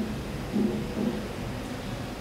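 Steady low rumble of background noise picked up by an open microphone, with a few faint, brief low sounds over it.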